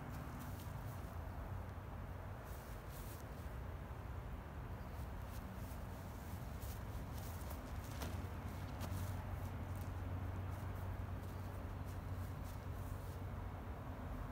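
Open-air ambience over a grass field: a steady low hum with an even hiss, and a few faint footfalls and rustles on grass around a disc golf throw about eight seconds in.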